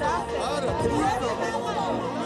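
Speech: a man talking animatedly over other overlapping voices in a crowd, with music faintly underneath.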